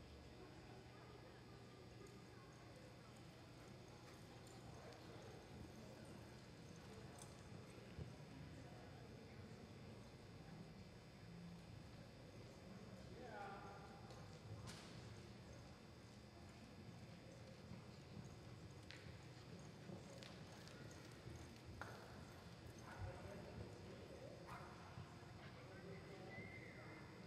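Faint hoofbeats of a horse loping on soft arena dirt, with low voices in the background.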